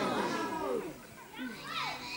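Faint background voices, children's voices among them, with a few high calls gliding up and down in the second second.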